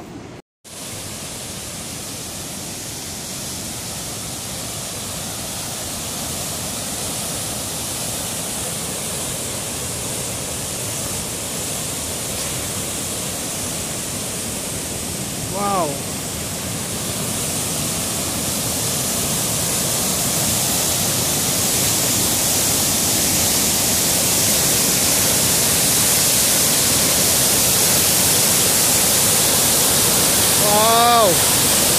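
River whitewater rushing steadily over a waterfall, getting gradually louder through the clip. About halfway through a brief voice cuts in.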